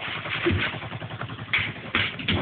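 Battery-operated squirrel toy's small motor running with a rapid rattling buzz and a few clicks.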